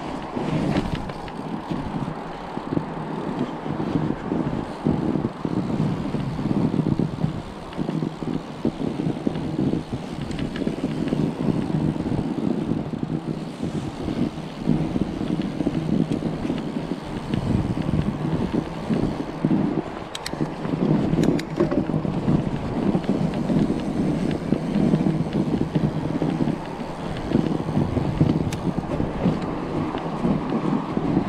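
Wind buffeting the microphone of a camera on a moving fat bike, mixed with the rumble of its wide tyres rolling on packed snow; the noise swells and dips unevenly, with a few faint clicks about two-thirds of the way through.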